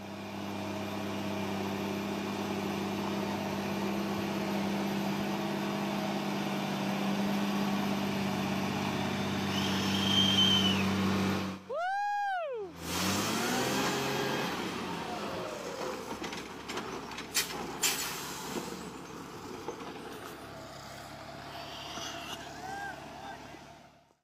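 Concrete mixer truck's diesel engine running steadily under load as it manoeuvres, with a brief high squeal near the ten-second mark. About twelve seconds in, a short rising-then-falling whistle-like glide breaks in. After that the truck sound is quieter, with a few sharp clicks.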